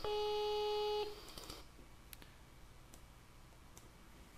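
A voicemail-style beep tone, played back and re-recorded through a speaker: one steady, low-pitched electronic beep with overtones, lasting about a second, that cuts off sharply. A few faint clicks follow.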